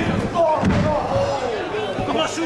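A wrestler's body hitting the ring canvas: one heavy slam with a dull boom from the ring about half a second in.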